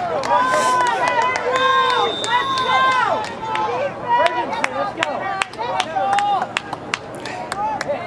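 Many voices of lacrosse players and sideline shouting and calling over one another, with frequent sharp clacks of lacrosse sticks.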